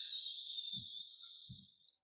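Quiet, soft hiss of a man's breath or drawn-out 's' fading away over about two seconds, with two faint soft knocks in the middle.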